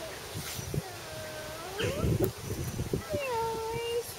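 Goat bleating: two drawn-out calls, the first rising in pitch, the second dipping and then held steady for over a second. Some low rustling and knocking between them.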